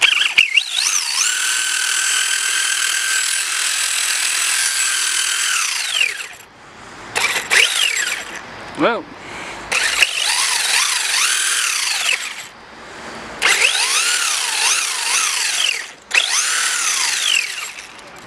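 FTX Vantage RC buggy's 2950kv brushless motor and shaft-driven drivetrain whining as the throttle is worked with the wheels spinning free in the air. A long steady high whine that rises as it starts comes first, then several shorter bursts whose pitch rises and falls.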